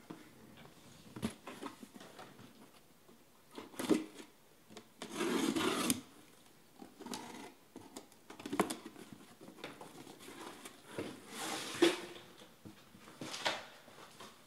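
Cardboard boxes being handled on a tabletop: scattered rubs and light knocks, with two longer scraping rubs about five and eleven seconds in.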